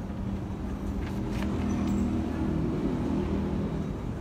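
A low, steady mechanical hum, like an engine, that swells through the middle, with a few faint clicks about a second in.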